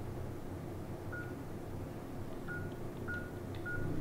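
Electronic keypad beeping as keys are pressed: four short beeps at one pitch, unevenly spaced, over a low steady hum.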